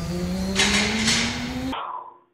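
A man's long, rising, open-mouthed yell, rough and engine-like, rising steadily in pitch for nearly two seconds and cut off abruptly near the end.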